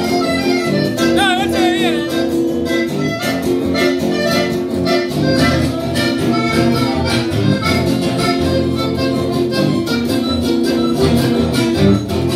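Live chamamé band playing: a button accordion carries the melody over strummed acoustic guitars, with a steady dance rhythm.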